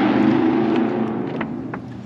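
Ford Focus ST's turbocharged two-litre engine idling steadily, growing quieter in the second half, with a few sharp clicks.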